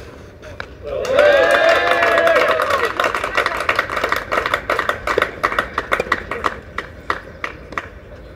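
Spectators clapping after a point, with a loud shout of cheering over the first couple of seconds; the applause thins out and stops near the end.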